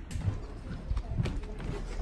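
Footsteps on a hard shop floor: a run of soft, uneven thumps as someone walks.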